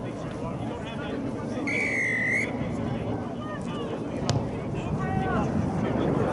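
A single short, high whistle blast from the rugby referee about two seconds in, over faint distant shouting from players and spectators. A sharp click follows a little after four seconds.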